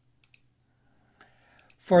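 Faint computer mouse clicks: a quick press-and-release soon after the start and another shortly before speech resumes near the end.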